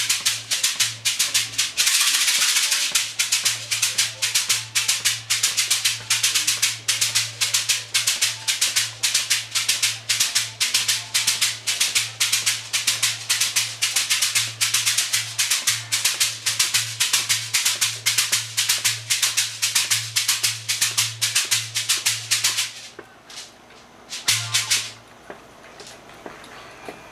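A shaker played in a steady, even rhythm of about four strokes a second. It stops shortly before the end, followed by one brief burst of shaking.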